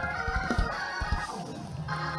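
Organ holding a sustained chord, with a few low thumps in the first second or so, then changing to a new chord with a steady bass note near the end.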